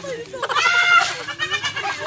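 A man's high-pitched laugh in two bursts, one about half a second in and one about a second in, over other men's voices and laughter.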